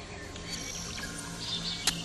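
Faint background music on a radio broadcast, with steady low held notes, during a pause in the talk. A single sharp click comes near the end.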